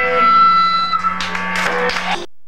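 Live no-wave rock band playing: electric guitar and bass hold sustained, droning notes, with a few sharp strums or hits in the second half.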